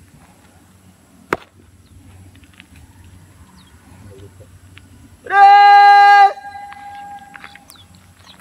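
A single sharp stamp of a shoe on asphalt, then about four seconds later a loud, level-pitched call lasting about a second, with a fainter steady tone trailing after it.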